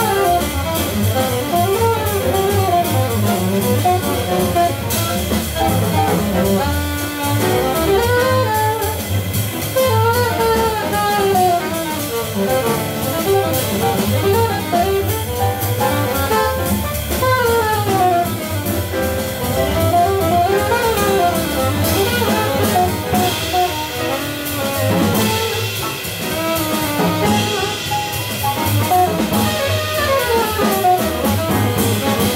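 Live jazz: an alto saxophone plays a solo of quick runs that climb and fall, over double bass and a drum kit with cymbals.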